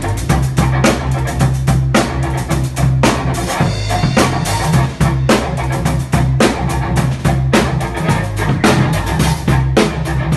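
A live rock band plays an instrumental passage, led by a drum kit with busy snare and bass-drum hits. An electric bass line and guitars run underneath.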